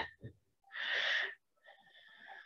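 A single audible breath close to the microphone, lasting about half a second, a little under a second in.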